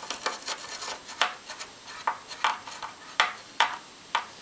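A hand screwdriver turning a small screw down into a brass standoff, with sharp metallic clicks at irregular spacing, a few each second, as the tip works the screw head.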